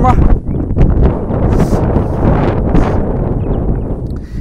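Wind buffeting the microphone outdoors: a loud, low, uneven rush that swells and eases, with a couple of brief hissy gusts near the middle.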